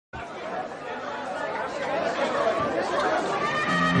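Crowd chatter in a large hall, many voices at once, slowly growing louder; instruments come in with bass notes just before the end as the band starts playing.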